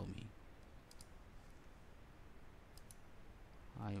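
Faint computer mouse clicks, two quick pairs, one about a second in and one near three seconds, over low room hiss, made while placing a PCB track point by point with a router tool.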